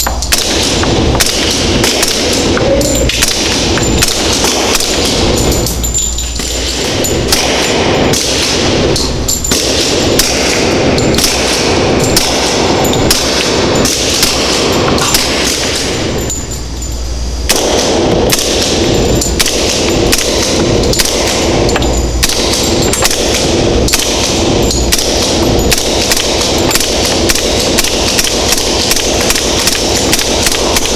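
Suppressed gunfire from pistol-caliber carbines fitted with a SilencerCo Hybrid 46M suppressor, first a B&T APC40 in .40 S&W. Many sharp shots come in quick strings, with short pauses about a fifth of the way in and just past the middle.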